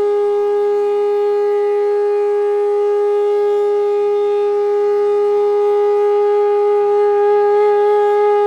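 Bansuri (Indian bamboo transverse flute) holding one long, steady note in the slow opening alap of a raga, over a faint low drone.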